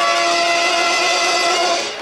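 Brass fanfare band of trumpets, trombones, euphoniums and sousaphones holding a sustained chord, cut off sharply near the end.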